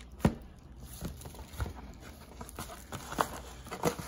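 Cardboard trading-card box and its cardboard insert being handled: scattered light knocks and rustles, the sharpest about a quarter second in.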